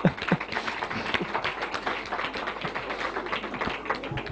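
Audience applauding: many distinct hand claps in a dense, irregular patter that stops near the end.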